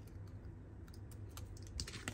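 Faint handling of a small cardstock die-cut, with a few light clicks near the end as it is pressed and fingered, over a low steady hum.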